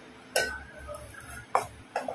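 Two sharp clinks on a stainless steel plate holding rice, about a second apart, with a softer third one near the end.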